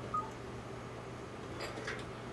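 Quiet broadcast control-room background: a steady low equipment hum, with one short, high electronic beep just after the start.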